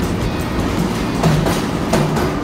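New York City subway train running along a station platform: a steady low rumble with a few sharp clicks from the wheels, with music playing over it.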